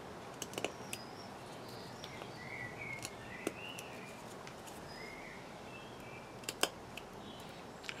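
Carving knife cutting a notch into a green stick: faint, scattered clicks and snicks as the blade pushes into the wood, a few seconds apart, over a low steady background.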